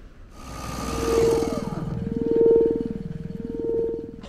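Synthesized electronic drone from an edited soundtrack: a steady mid-pitched tone with a lower tone sweeping slowly down and up beneath it, and a falling whistle about a second in. It starts suddenly and cuts off just before the end.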